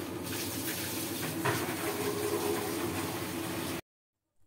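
Curry masala sizzling in oil in a kadai as spice powder is added: a steady frying hiss with a couple of faint clicks. It cuts off abruptly just before the end.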